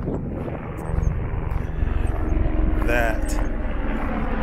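A steady low rumble with a faint motor-like hum. A voice is heard briefly about three seconds in.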